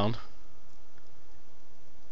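Steady microphone hiss with faint clicks from a computer mouse's scroll wheel as the page scrolls down. The last word of a man's speech ends right at the start.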